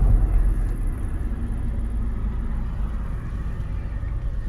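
Steady low rumble of a moving car heard from inside its cabin: engine and road noise, a little louder in the first second and then easing off.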